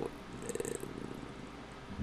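A man's voice trailing off in a low, creaky drawn-out hesitation between words, with a brief faint breathy hiss about half a second in.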